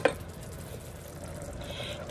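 Faint, steady sizzle and liquid noise from a pot of hot tomato sauce as raw chicken gizzards and their juices are tipped in.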